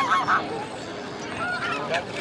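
Waterfowl calling on the lake, loudest right at the start, with shorter calls near the end, over people's voices.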